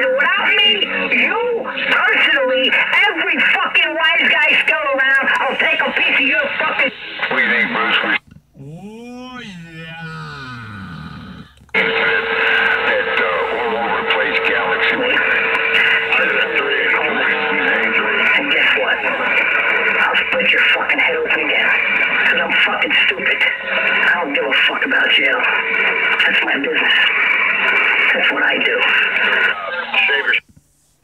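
Loud, garbled voices from a CB radio's speaker receiving single-sideband skip on 27.385 LSB. About eight seconds in the signal drops for a few seconds, leaving a quieter whistle that rises and falls. It then comes back strong, with a steady whistle over the voices for about six seconds.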